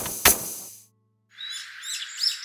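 A short musical sting of sharp hits for a title card, ringing out and fading within about a second. After a brief silence, small birds start chirping over a steady outdoor hiss.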